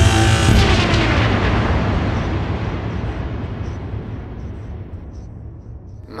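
A loud, noisy crash from the band, heavy in the low end, ringing out and fading away over about five seconds.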